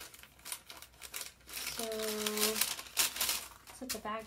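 Tissue paper and paper packing crinkling and rustling in irregular bursts as it is handled, loudest about three seconds in. A short hummed 'mm' sounds a little after halfway.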